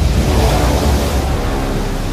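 A loud, steady, low rumbling noise with a faint drone in it: a dramatic anime sound effect.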